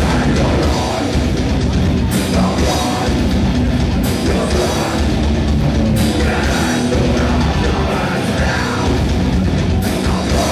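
Live rock band playing loud, with electric guitars and a drum kit; a crash cymbal hits about every two seconds.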